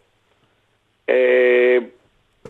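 A man's drawn-out hesitation sound "ehh", one held vowel at a steady pitch, coming after about a second of silence.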